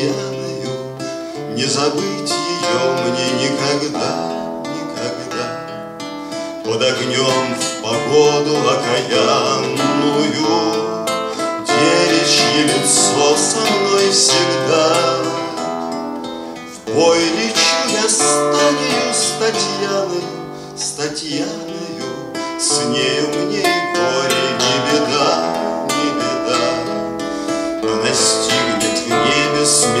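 A man singing a song to his own acoustic guitar accompaniment, strumming chords throughout.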